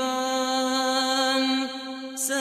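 A man's solo voice chanting Quran recitation in the melodic tajwid style, holding one long steady note for about a second and a half before it falls away near the end.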